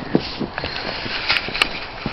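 Footsteps in wet, heavy snow: a run of irregular soft steps, with two sharper clicks a little past the middle.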